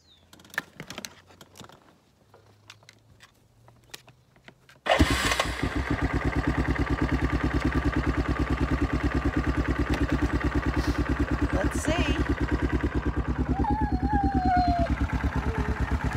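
Quad bike engine started: after a few small clicks, it fires about five seconds in and settles at once into a steady, evenly pulsing idle.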